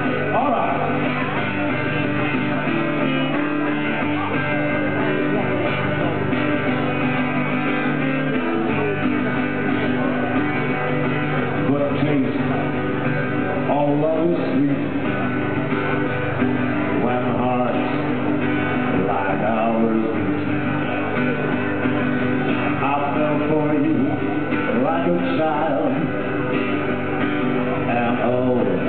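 Acoustic-electric guitar strummed steadily through a PA, with a man singing into the microphone at times.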